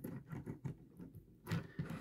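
Faint handling noise: a few light clicks and rubs as hands position a plastic Transformers Studio Series Bonecrusher figure, in vehicle mode, on a tabletop.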